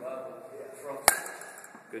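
A metal youth baseball bat striking a baseball off a batting tee: a single sharp crack about a second in.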